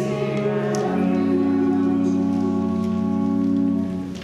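Sung church music ending: voices hold a chord, move to a final chord about a second in, and sustain it until it stops just before the end.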